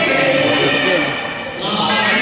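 Cantonese opera singing with instrumental accompaniment: a voice drawn out on a long vowel, sliding in pitch, over steady sustained instrumental tones.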